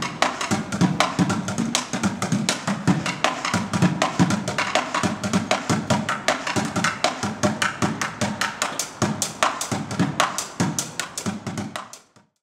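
Street drummer playing a makeshift kit of plastic buckets, metal pots and pans: a fast, steady stream of strikes mixing deep bucket thuds with bright metallic clanks.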